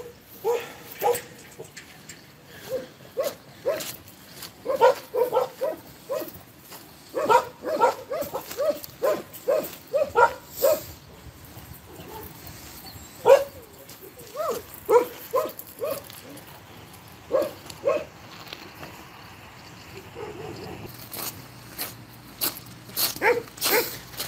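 Several dogs in shelter pens barking, short separate barks in irregular runs that thin out after the middle.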